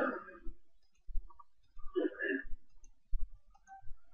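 Computer mouse clicking several times, short sharp clicks a second or two apart picked up by the microphone.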